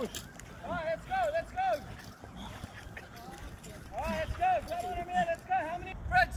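Men's short shouted calls, repeated in quick succession: a few about a second in, then a faster run from about four seconds in, the words unclear.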